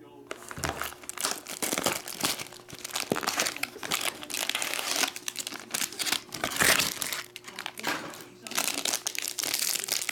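A Topps Star Wars Masterwork card box slit open with a utility knife, then the foil-wrapped card pack inside crinkling as it is pulled out and handled. The crackling comes in dense runs, with a short lull near the end.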